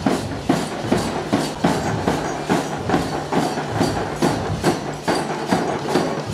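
Marching-band bass and snare drums beating a steady march rhythm, about two and a half strokes a second.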